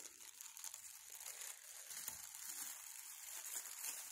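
Thin plastic bag crinkling softly and irregularly as it is handled and opened out.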